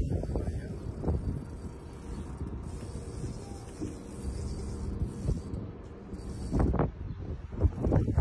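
Fishing reel working while a fish is fought on a bent rod: irregular mechanical clicking and winding over a low rumble, with a louder burst near the end.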